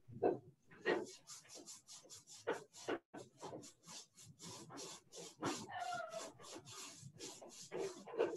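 Quick rhythmic rasping, about five short strokes a second, with a brief rising whine around the middle.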